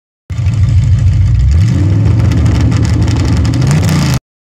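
Loud car engine revving, heard from inside the cabin: it comes in suddenly, climbs in pitch about a second and a half in, and holds at the higher revs.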